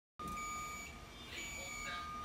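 A fire alarm control panel's built-in electronic sounder: a steady high tone, joined twice by a higher beep lasting about half a second.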